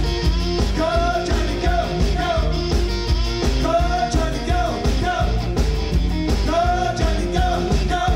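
Live rock band playing: singing in short, repeated phrases over a steady drum beat, bass and guitar.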